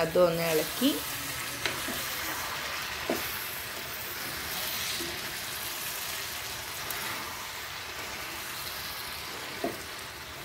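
Diced half-ripe mango pieces frying in coconut oil in a pot, sizzling steadily while being stirred with a metal spoon, with a few brief scrapes and knocks.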